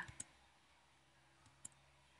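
Near silence: faint room tone with two brief, faint clicks, one just after the start and one about a second and a half later.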